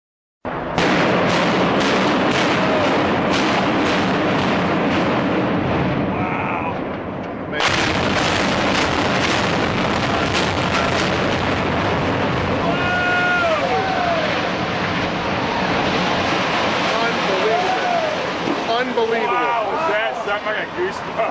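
A loud, continuous roar with dense crackling, recorded on a camera microphone. It is the sound of a building collapsing, and it starts suddenly about half a second in. In the second half, people's shouts and cries rise over the roar.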